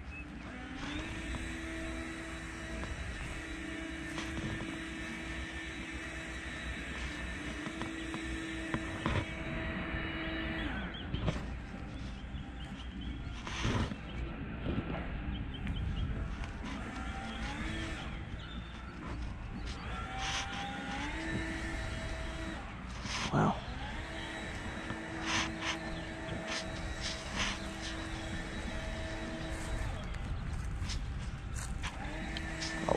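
A motor hums at a steady pitch for several seconds at a time, stops, then starts again, over a continuous low rumble, with a few sharp knocks scattered through.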